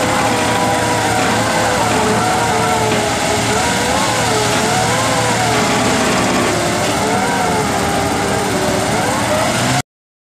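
Off-road 4x4 engine held at high revs, its pitch wavering up and down as the throttle is worked, while its wheels spin in loose dirt. The sound cuts off abruptly near the end.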